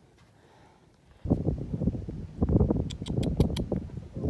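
Wind buffeting a phone's microphone outdoors: a loud, fluttering low rumble that starts suddenly about a second in, with a quick run of sharp clicks near the three-second mark.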